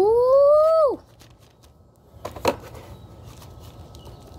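A boy's drawn-out "ooh" of delight, rising in pitch and then dropping off about a second in. A couple of short crinkling clicks follow about two and a half seconds in, from handling the black plastic tray of chocolate wafer rolls.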